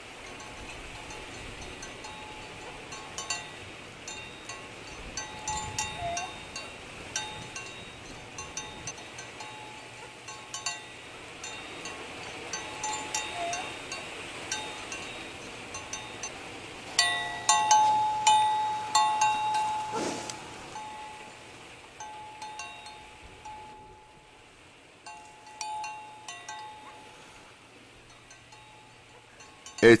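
Small metal bells clinking and tinkling irregularly, loudest and busiest a little past the middle, then thinning out.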